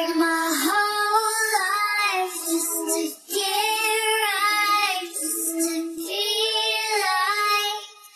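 High female pop voice singing long, wavering vocal lines with no clear words, with little or no bass underneath. The voice breaks off briefly about three seconds in and again near the end.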